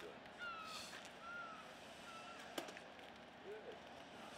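A bird calling in three short, slightly falling notes about a second apart, faint over the open-air background. A single sharp click comes a little past halfway.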